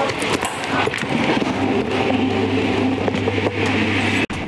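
Airport X-ray baggage scanner's conveyor belt running, carrying a bag into the scanner tunnel, with a steady low hum that comes in about one and a half seconds in.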